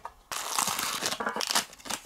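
Clear plastic bag and bubble wrap crinkling and rustling as they are handled and pulled open, starting about a third of a second in.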